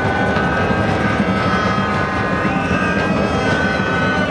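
Steady, loud stadium crowd noise with a deep rumble and a few long held tones rising above it.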